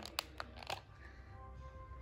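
A few soft clicks from a handheld ceiling-fan remote being handled and pressed, then a faint steady tone setting in about a second in.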